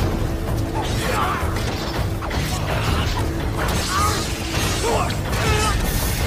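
Film sword-fight soundtrack: swords clashing and slashing over steady music, with short cries from the fighters.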